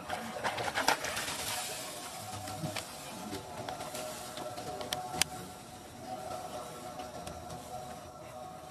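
Water splashing as a monkey wades through a shallow pool, loudest from about half a second to two seconds in, over steady background bird calls, with a few sharp clicks later on.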